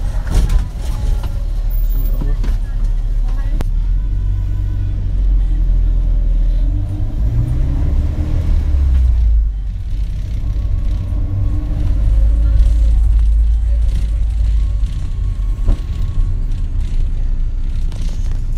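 A 16-seat minibus's engine and road noise heard from inside the cabin while it drives, as a steady low rumble; the engine note rises for a couple of seconds and drops away about nine seconds in.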